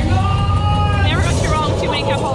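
Flying-theater ride audio: a steady deep rumble, with a voice holding one long note for about a second and then breaking into quick, changing calls.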